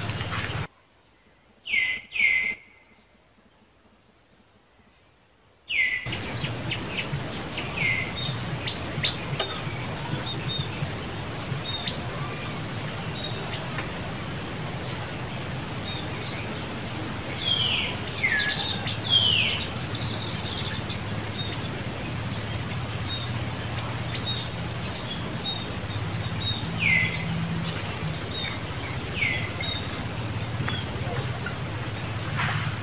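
Bird chirps: short calls sliding down in pitch, repeated irregularly over steady outdoor background noise. About a second in, the background cuts out for roughly five seconds, with two chirps inside the gap.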